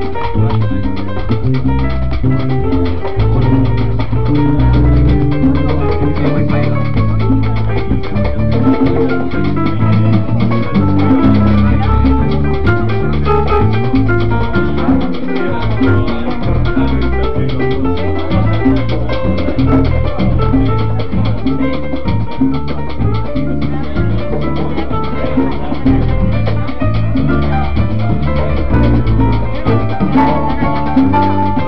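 Live salsa band playing an up-tempo number: grand piano, electric bass and timbales over a dense, steady Latin rhythm.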